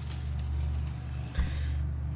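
A steady low hum, with a single dull thump about one and a half seconds in.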